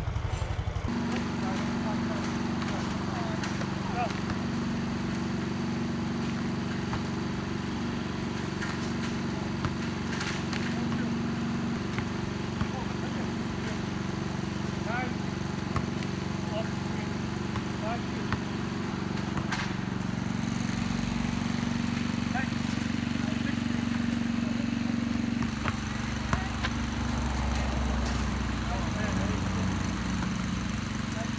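A steady low motor hum throughout, with a few sharp thuds of a basketball bouncing on the asphalt driveway and hitting the hoop, and players' voices calling out now and then.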